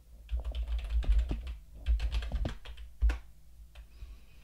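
Typing on a computer keyboard: a quick run of keystrokes entering a short terminal command, ending with one louder key press about three seconds in.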